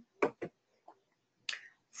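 A few short, sharp clicks in a pause between words: two quick ones close together near the start, a faint one about a second in, and another about a second and a half in, with dead silence between them.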